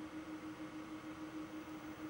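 Faint room tone: a steady low hum with an even hiss.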